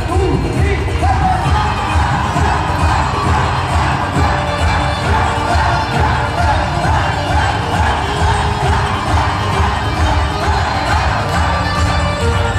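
Concert audience cheering and shouting over loud live Punjabi music with a steady beat, filling a large hall.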